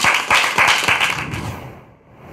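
A small group of people clapping, the applause dying away over about a second and a half.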